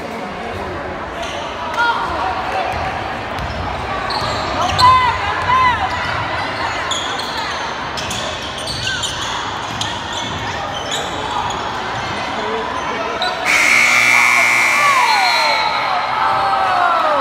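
Basketball game in a gym: a basketball bouncing on the court, short sneaker squeaks, and a crowd talking. A louder burst with a steady high tone starts near the end and lasts about two seconds.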